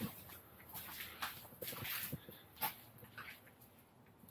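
Faint footsteps and scattered short knocks on the floor of an empty city bus as someone walks along the aisle.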